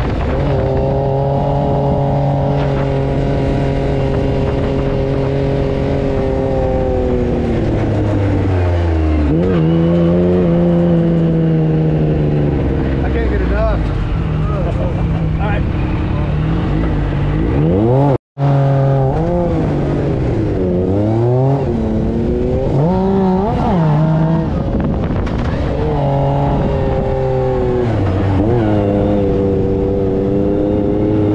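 Sand buggy's engine heard from the cockpit while driving over dunes: it runs steadily at first, then its pitch repeatedly falls and rises as the throttle is let off and opened again. The sound cuts out for an instant a little past halfway.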